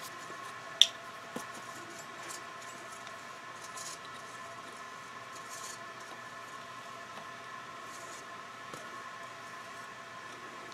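Small handling sounds from a screwdriver working a V-brake's spring-tension screw: a sharp click about a second in, then a few faint clicks and soft brushing noises over a steady low hum.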